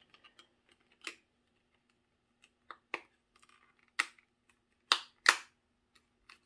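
A plastic sunglasses lens being pressed back into its paint-coated plastic frame, making a series of sharp clicks and snaps, the loudest two about half a second apart near the end.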